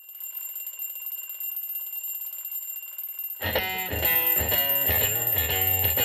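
A twin-bell mechanical alarm clock ringing, a rapid steady high-pitched jangle. About three and a half seconds in, blues-rock band music with guitar and bass comes in, with the ringing carrying on underneath it.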